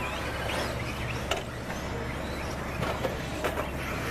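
Electric RC off-road buggies racing on a dirt track: a steady mechanical running noise with faint rising and falling motor whine and a few short clicks.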